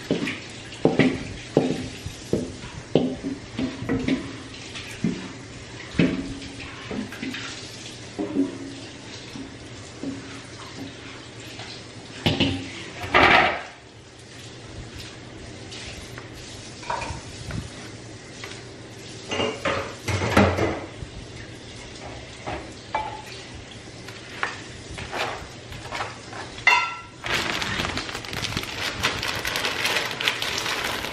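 A wooden spoon scraping and knocking against a large stainless steel mixing bowl and disposable aluminium foil pans as noodle casserole mixture is scooped out and spread, in a run of irregular clatters. Near the end, a plastic bag of shredded cheese rustles.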